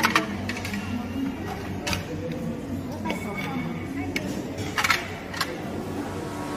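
Buffet-restaurant ambience: a murmur of diners' voices, with several sharp clinks of crockery, the loudest about two seconds and five seconds in.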